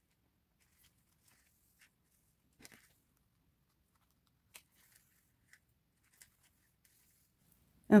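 Near silence with a few faint, short rustles and ticks from hands handling lace and fabric during hand sewing.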